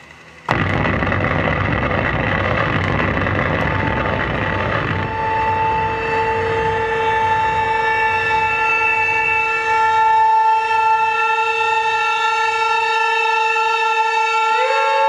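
Live harsh-noise electronics: a loud wall of dense static cuts in suddenly about half a second in. About five seconds in it gives way to a steady electronic drone, one held tone with a stack of overtones.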